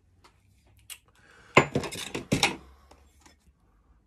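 A steel cold chisel set down into a galvanised steel toolbox: a light knock about a second in, then a quick run of metal clatters and knocks around the middle.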